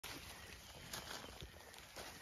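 Sheep feeding on cut pine limbs: faint, irregular rustling and crunching of pine needles and dry leaf litter as they pull at and chew the boughs and shift their feet.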